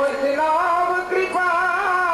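Devotional kirtan singing: a continuous sung melody with wavering, ornamented pitch.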